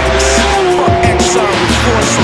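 Hip-hop backing track with a steady deep bass, mixed with the sound of cars passing at speed on the circuit: engines running with a slightly falling pitch, and tyre squeal.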